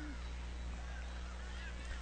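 Low steady electrical hum under faint, distant stadium crowd noise, with a brief faint sliding call near the start.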